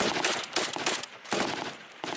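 Automatic fire from a Kalashnikov-type assault rifle: a rapid burst lasting about a second, then a shorter burst a moment later.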